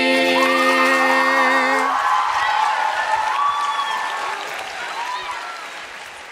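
The last held note of several voices singing together ends about two seconds in, and an audience breaks into applause with whoops and cheers. The applause fades out toward the end.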